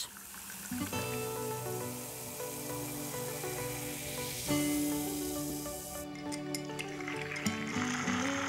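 Acid pouring onto crab shells in a glass beaker, hissing and fizzing as it dissolves the shells' calcium carbonate; the fizz cuts off suddenly about six seconds in. Background music with slow held chords plays throughout.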